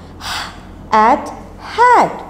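A woman's voice: a sharp breath just after the start, then two short, separate spoken syllables, one about a second in and one near the end.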